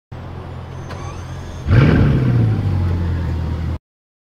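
Bugatti Chiron's quad-turbo W16 engine running steadily, then about a second and a half in it jumps louder in a short rev whose pitch rises and falls back, settling to a steady, higher idle. The sound cuts off suddenly near the end.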